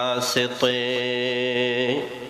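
A man chanting a hamd in Urdu, unaccompanied and amplified through a microphone. A short sung note is followed, about half a second in, by one long held note that ends near the end.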